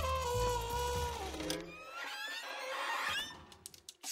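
A one-man band's brass horn holds a note that sags downward and peters out, followed by a jumble of squeaky sliding notes and then a quick run of mechanical clicks and rattles from the contraption near the end.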